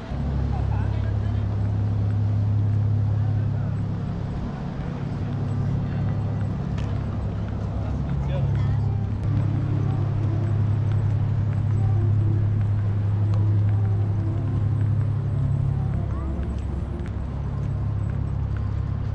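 A steady low rumble, with faint voices of people talking over it.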